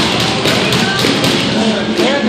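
Irregular taps and thuds of boxing gloves and feet on the ring canvas during sparring, several in quick succession.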